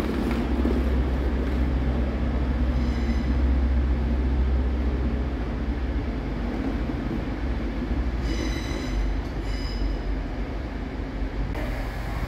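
Train moving through a railway station, a steady low rumble with two brief high squeals about eight and nine and a half seconds in.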